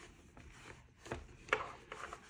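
Faint rubbing and shuffling of a paperback notebook being handled and slid against a smooth leather cover, with a couple of soft knocks in the second half.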